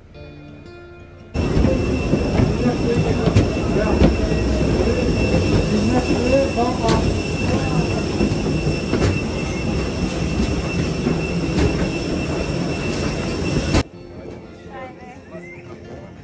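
Loud steady roar of aircraft turbines on an airport apron, carrying several high steady whine tones. It starts abruptly about a second in and cuts off shortly before the end, with a few sharp knocks of footsteps on metal checker-plate stairs.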